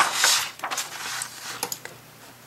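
A paper page of a picture book being turned by hand: a loud swishing rustle in the first half second, then fainter rustles and a few light clicks as the page settles.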